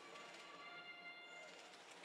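Near silence, with a few faint steady tones in the background.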